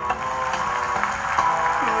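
A Vietnamese ballad playing through a pair of bare, unboxed 16.5 cm Japanese-made woofers driven without a crossover, heard in a pause between sung lines.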